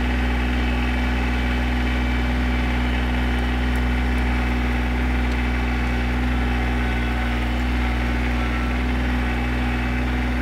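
Kubota compact tractor's diesel engine running at a steady speed as the tractor drives along, heard close up from the operator's seat.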